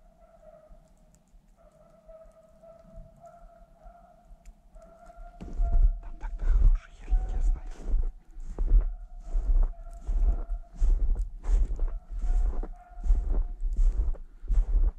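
Footsteps crunching in snow, starting about five seconds in and going at about two steps a second. Before them, and faintly under them, a thin steady distant tone holds with short breaks.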